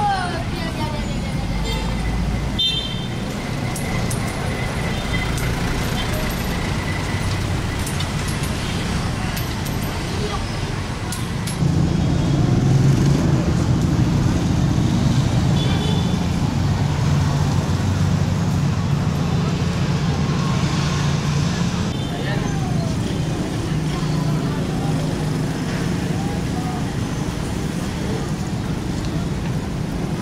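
Busy city-street traffic: motorcycles and cars running past, with passers-by talking. About a third of the way in, a louder low engine drone from a nearby vehicle sets in and lasts most of the rest.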